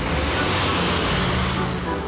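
Cartoon sound effect of a small city bus driving off: a rushing whoosh of engine and road noise that swells and then fades, over a low engine hum.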